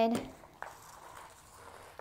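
Faint, soft rustle of paper and thread as a hand-stitched paper sketchbook is turned over and its binding thread is drawn through a hole in the spine.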